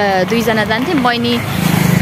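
A woman talking, then, about one and a half seconds in, a passing vehicle's engine comes up loud with a rapid low pulsing that drowns her voice.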